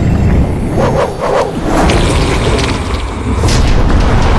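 Film sound design for a burst of magical energy: a deep, continuous booming rumble with whooshes about a second in and again near the end, over dramatic background music.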